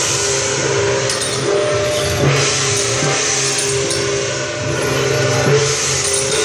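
Taiwanese temple-procession percussion: large hand cymbals clashing in a continuous wash, with drum and gong strokes and sustained ringing tones beneath.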